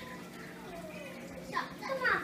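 Background chatter of children's voices in a room, fainter through the middle, with a nearer voice coming in near the end.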